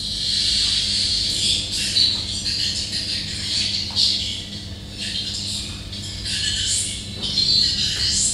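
Birds chirping and squawking irregularly over a low steady hum.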